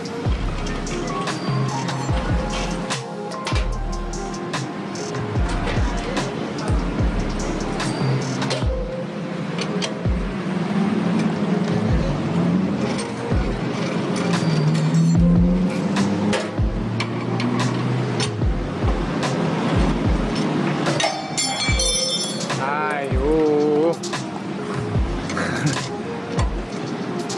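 Background music with a regular bass beat.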